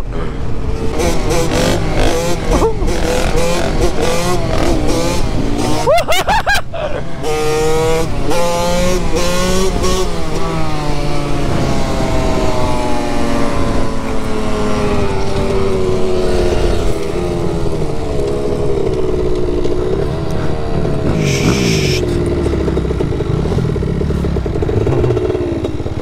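KTM 65 SX single-cylinder two-stroke dirt bike engine, heard from the rider's seat, revving hard through the gears: the pitch climbs, drops at shifts about six and ten seconds in, then holds a steadier, slowly falling note as it cruises. Wind buffets the microphone throughout.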